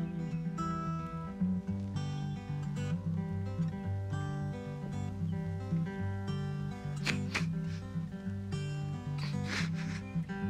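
Acoustic guitar playing a steady, even accompaniment of repeating bass notes and chords, an instrumental passage between sung lines of a slow ballad.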